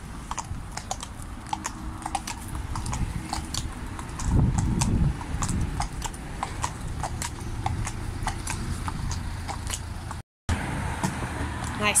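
Hooves of two horses walking on a concrete footpath, an irregular clip-clop, over the steady noise of road traffic. A vehicle passes loudly about four seconds in, and the sound cuts out for a moment shortly before the end.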